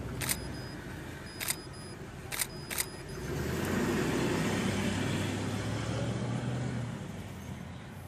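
Four sharp camera shutter clicks in the first three seconds, then a car passes by, its engine hum and tyre noise swelling and fading over about four seconds.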